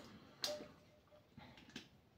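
A few faint clicks and light knocks from kitchen items being handled: one about half a second in, then softer ticks near the end.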